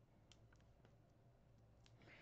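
Near silence: a few faint clicks as hands handle cardstock and foam adhesive dimensionals, over a faint steady low hum.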